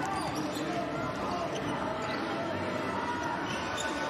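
Basketball being dribbled on a hardwood court, with a steady background of crowd voices in the arena.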